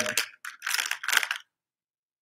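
Small fishing tackle (a jig head and soft-plastic grub) being handled, with short rustles and clicks for about a second and a half before the sound cuts out abruptly.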